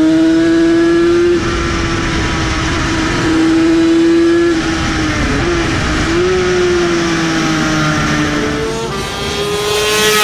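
Classic racing motorcycle engine at high revs, heard from onboard with wind rushing past. It holds a high, steady pitch with brief dips as the throttle eases and picks up again. Right at the end a racing motorcycle passes by fast, its pitch dropping sharply.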